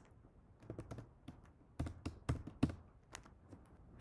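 Keys being typed on a computer keyboard: faint clicks in short, irregular bursts.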